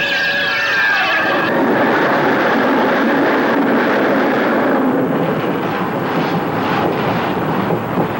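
Steel roller coaster train running along its track, a loud, steady rushing rumble with some uneven rattling in the last few seconds. For about the first second and a half, eerie pitched tones gliding up and down sound over it, then cut off suddenly.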